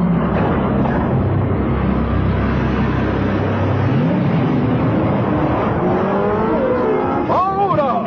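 Cartoon sound effects of a column of robot vehicles' engines running: a heavy low rumble that thins out about halfway, then whines gliding up and down near the end.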